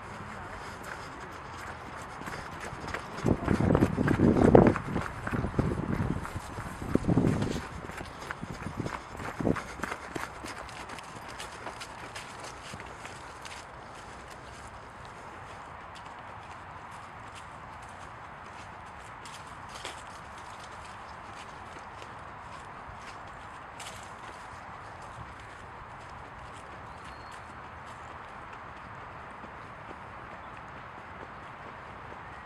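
Footsteps of a person walking and running with a DSLR on a handheld stabilizer, picked up by the camera's built-in microphone over a steady hiss, with loud gusty rumbling on the microphone for several seconds early on before it settles to faint steps.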